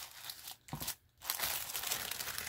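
Pink tissue paper rustling and crinkling as hands fold it back inside a cardboard mailer box, with a brief pause about a second in before a longer, denser rustle.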